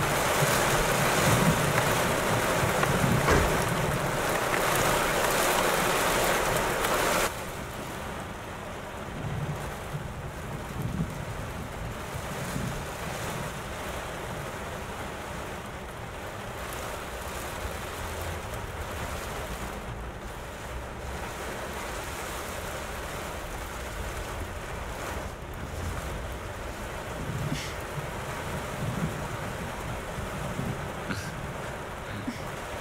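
Heavy rain pouring down as a loud, even hiss. About seven seconds in it cuts off abruptly and the rain goes on quieter and muffled, as heard from inside a car, with a low rumble underneath.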